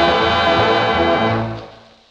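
Swing dance band's closing chord, brass held together over the rhythm section, fading out near the end as the record finishes.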